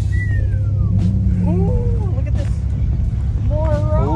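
People's voices over a steady low rumble, with a single falling whistle-like tone in the first second.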